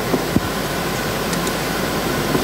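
Steady hiss of the lecture hall's air handling, with a small click about a third of a second in.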